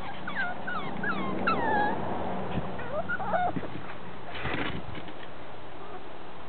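Shetland sheepdog puppies whimpering and yipping: a quick run of short, high-pitched whines in the first two seconds, then a few lower ones around three seconds. A brief burst of noise follows a little after four seconds.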